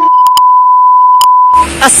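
Test-card beep: a loud, steady single-pitch tone of the kind played with TV colour bars, lasting about a second and a half with three short clicks over it, then cut off abruptly.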